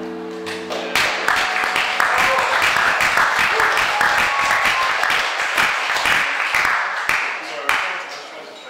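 The last vibraphone chord rings out and stops about a second in. A small audience then claps and applauds, and the clapping dies away near the end.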